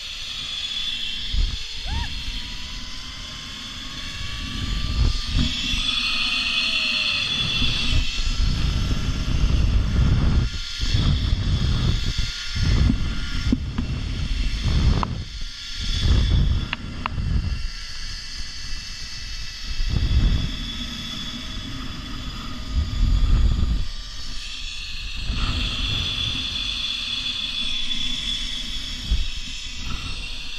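Zipline trolley pulleys running along the steel cable with a continuous whirring hiss that swells and fades, and a faint whine rising slowly in pitch. Heavy wind buffets the microphone in gusts.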